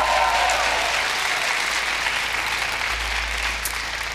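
Studio audience applauding, the clapping slowly dying down.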